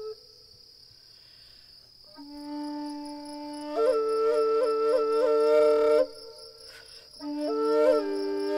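A breathy flute melody over a steady high cricket chirring. After a pause of about two seconds, with only the crickets heard, the flute enters on a low held note and climbs to a higher note decorated with quick repeated flicks. It breaks off, then comes back on the low note near the end.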